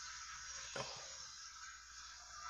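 Faint steady hiss with one brief soft click a little under a second in.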